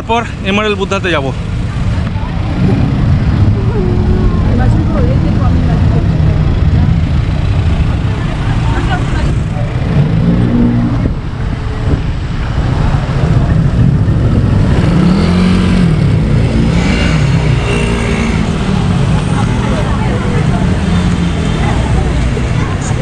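Street traffic by a busy road: a steady, heavy low rumble of vehicles, with scattered voices of passers-by.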